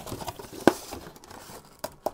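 Cardboard packaging and plastic wrap rustling and crinkling as a box insert is pulled out and its flaps opened, with one sharp click a little way in.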